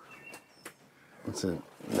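A man speaking in short bursts with a pause in the middle. A few faint clicks fall in the gap.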